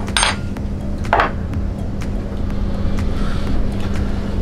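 Light kitchen clatter of tongs, plate and pan as grilled chicken pieces are plated, with two short scrapes about a quarter second and a second in. A steady low hum runs underneath.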